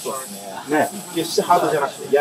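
Men's voices talking briefly in Japanese, over a steady high-pitched hiss.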